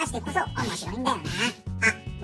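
Spoken voice-over narration over background music with a steady bass line.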